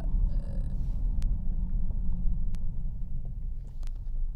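Steady low rumble of a moving car heard from inside the cabin: engine and road noise, with a couple of faint clicks.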